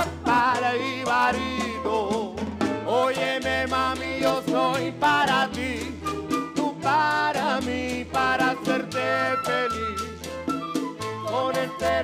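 Salsa played live by a charanga band, in an instrumental passage: a transverse flute carries a wavering melody over a steady bass line and conga and timbales percussion.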